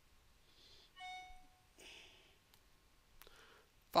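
A short, faint electronic chime about a second in, under a second long: a computer's system alert tone.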